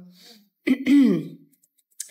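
A woman clears her throat once, about half a second in, a short voiced rasp that falls in pitch. Her voice is hoarse, worn out from talking at an exhibition.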